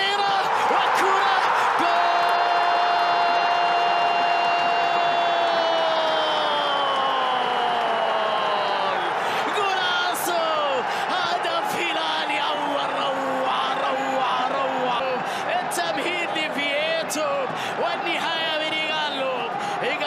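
A TV football commentator's long drawn-out shout for a goal, held for about four seconds and then falling in pitch, over steady stadium crowd noise. Excited rapid commentary follows.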